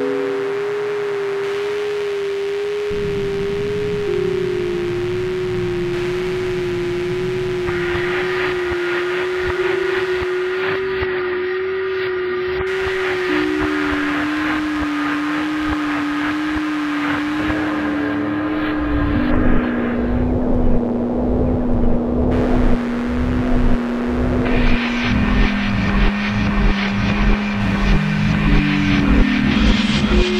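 Algorithmic electroacoustic computer music made in SuperCollider: a steady pure tone steps down in pitch in several stages over a dense, grainy crackling texture. In the last third the texture grows louder and breaks into irregular rapid pulses.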